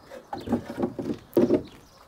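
Plywood step unit being pushed into its slot in a van's sliding-door step, wood scraping with a sharp knock about a second and a half in as it seats.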